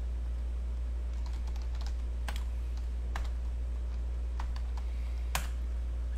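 Typing on a computer keyboard: scattered, irregular keystrokes starting about a second in, the loudest one near the end, over a steady low hum.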